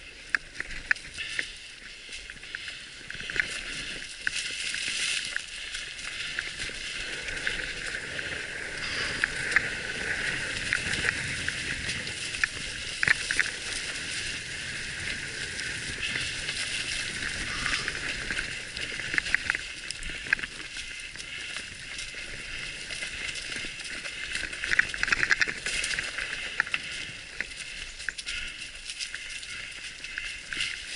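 Mountain bikes rolling along a dirt trail strewn with dry leaves: a steady thin hiss of tyres and air, broken by frequent small clicks and rattles as the bikes go over bumps.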